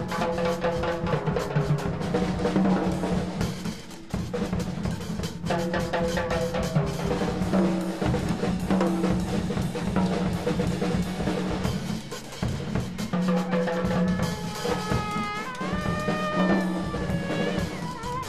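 Live electric jazz-funk improvisation: a busy drum kit over a bass guitar line, with electric guitar and trumpet. Near the end a lead line bends in pitch.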